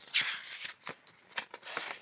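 Loose paper inserts being handled, rustling and crinkling in a few short scrapes and crackles. The handling is loudest just after the start, with a few sharp clicks later on.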